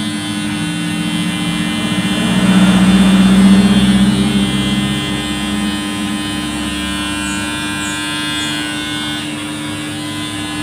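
Cordless electric hair trimmer running with a steady buzz while its blade is worked along the hairline around the ear. The buzz swells louder for a few seconds in the middle.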